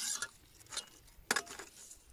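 Faint rustling of onion leaves and garden soil as an onion is handled and pulled, with one sharp tick a little past a second in.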